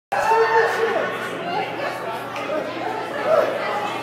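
Indistinct chatter of many people talking at once in a crowded room.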